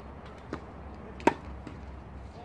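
Tennis ball impacts during a rally on a hard court: a faint knock about half a second in, then a sharp, much louder pop a little past the middle.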